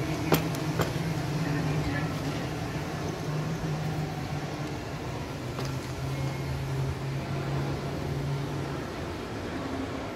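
Steady low hum of a large airport hall with faint voices in it, and two sharp clicks, one about a third of a second in and one just under a second in.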